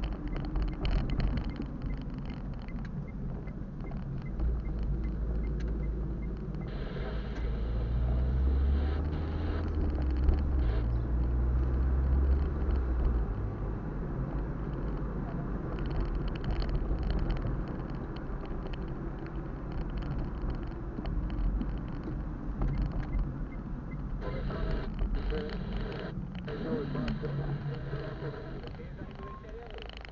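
Car cabin road noise from a moving car: a steady low engine and tyre rumble, heaviest about a third of the way in.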